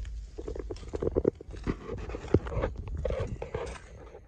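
Irregular crunching and scuffing on gravel, with rubbing and bumping on the microphone and a low rumble of handling noise.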